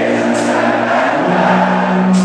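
Heavy metal band playing live: distorted electric guitars hold droning chords that shift to a new pitch a little after a second in, with a cymbal crash about half a second in.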